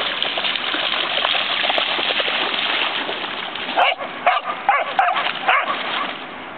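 A young Australian kelpie splashing as it runs through shallow water, then barking about five times in quick succession near the end.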